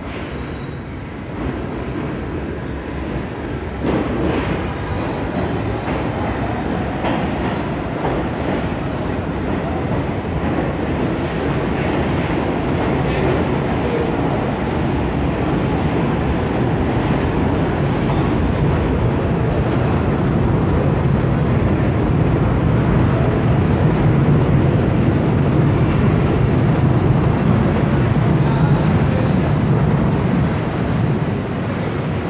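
New York City subway 7 train running along the station platform, its wheels and motors growing steadily louder, with a few brief clicks from the wheels in the first half.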